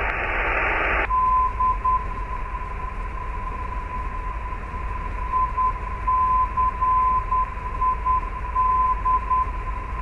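Navigation radio audio through the headset: about a second of static hiss, then the ILS localizer's Morse code identifier, a steady beep keyed in dots and dashes over a faint hiss. It is the ident of the I-CID localizer on 109.3, listened to so as to confirm the right navaid is tuned.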